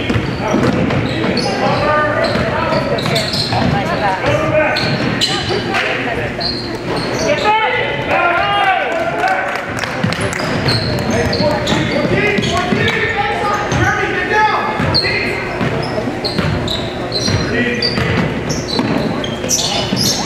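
Live basketball game in a large gym: a basketball dribbled on the hardwood floor, sneakers squeaking, and players, coaches and spectators calling out indistinctly, all with gym echo.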